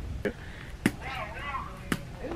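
Two sharp knocks about a second apart, with a short stretch of voice between them.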